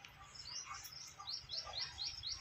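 A bird chirping faintly in the background: a quick series of short, high chirps, about four a second, in the second half.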